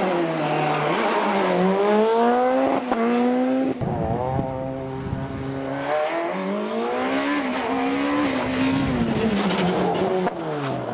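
Peugeot 207 S2000 rally car's four-cylinder engine revving hard, its pitch climbing through each gear and dropping at the shifts and lifts, several times over. The sound changes suddenly about four and six seconds in, where the pitch holds steady for a while between climbs.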